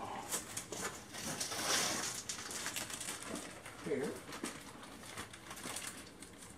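Faint rustling and light clicks of objects being handled on a desk, with a short spoken word near the end.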